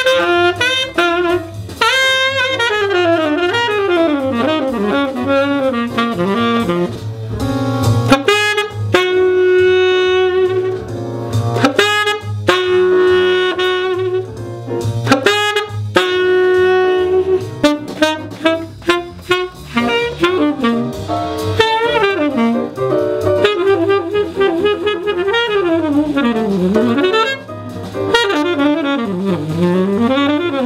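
Tenor saxophone playing a jazz solo in a swing feel: quick runs sweeping up and down, broken by a few long held notes in the middle.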